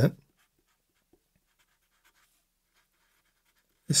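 Faint scratching of a felt-tip marker writing words on paper, in many short strokes.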